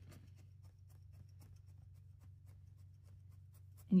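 Needle-felting tool stabbing repeatedly into wool on a felting pad: rapid, faint ticks, over a low steady hum.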